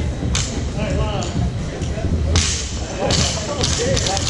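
Barbell loaded with bumper plates striking the rubber gym floor as it is lowered between lifts: three sharp slaps, the loudest about two and a half seconds in. Voices carry in the background.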